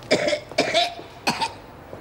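An elderly woman coughing in a coughing fit: three harsh coughs in quick succession.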